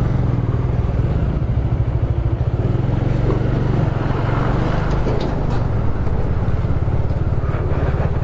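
Bajaj Dominar 400 motorcycle's single-cylinder engine running steadily at low road speed, heard from on the bike as an even pulsing rumble with road and wind noise. Around the middle a truck passes close by, adding to the noise.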